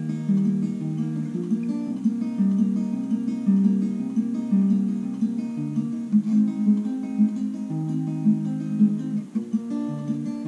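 Capoed steel-string acoustic guitar fingerpicked, single strings plucked one after another in a repeating arpeggio pattern across chord changes, the notes ringing into each other.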